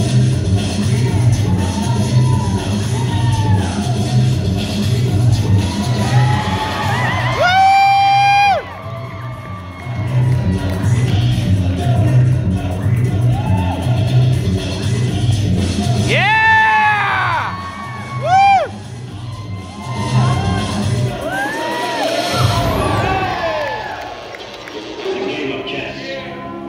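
Dance music with a steady bass beat playing through a hall PA, under a cheering crowd. Loud whoops and shouts from the audience stand out about eight seconds in and again around sixteen to eighteen seconds. The beat fades out about three-quarters of the way through.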